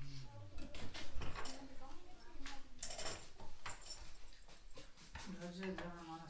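Quiet talking in a small room, mixed with scattered clicks and knocks of objects being handled; the voice grows clearer about five seconds in.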